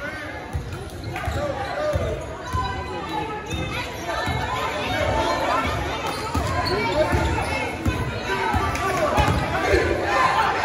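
Basketball dribbled on a hardwood gym floor, a thud about once a second, echoing in a large gymnasium under the chatter of spectators' voices.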